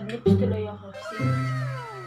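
Edited-in comical sound effect over the soundtrack: low held notes sounding three times, then a long downward-sliding tone that fades away, heard by a tagger as cat-like meowing.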